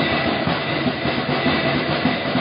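Steady, loud din of a crowd in a reverberant sports hall at a boxing match.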